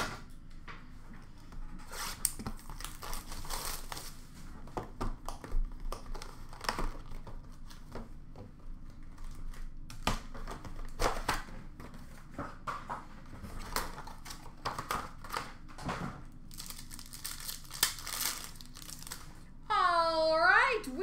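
A sealed trading-card box being unwrapped and opened by hand: wrapper crinkling and tearing, cardboard lid and packaging rustling, in irregular bursts of crackles and clicks.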